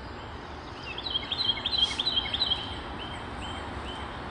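A songbird singing a quick run of high, repeated chirps starting about a second in and lasting about a second and a half, followed by a few single notes, over a steady low outdoor rumble.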